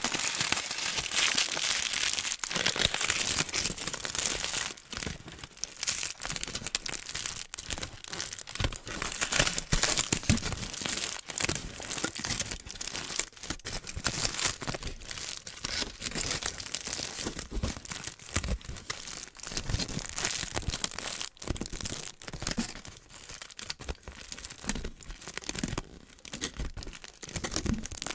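Crumpled aluminium foil being crinkled and squeezed in the hands right up against a microphone. It makes a dense, continuous crackle for the first few seconds, then thins into separate bursts of crackles.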